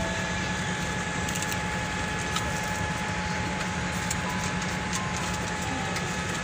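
Steady hum of an airliner cabin's air system, with a faint steady high whine running through it and a few small clicks and knocks.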